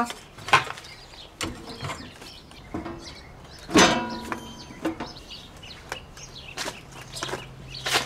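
Electric meter being pushed into its meter socket on a main panel: a series of clicks and knocks as it is fitted, the loudest a sharp clack about four seconds in with a brief ring after it. A low steady hum comes in near the end.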